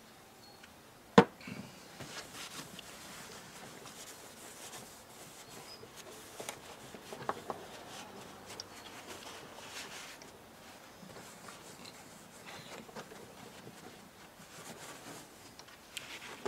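Hands and a cloth rubbing WD-40 into the vinyl seat cushion of a fishing seat box: a soft, intermittent rubbing and wiping with small ticks. A single sharp knock comes about a second in.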